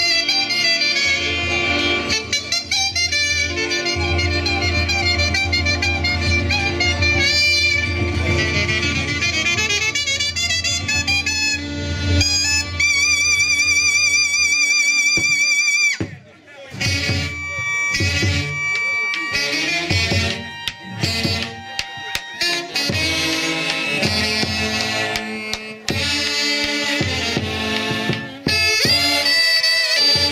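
Live Andean Santiago fiesta band music, led by saxophones playing with heavy vibrato over a steady bass. About halfway through it breaks off for a moment and comes back in a choppier stretch.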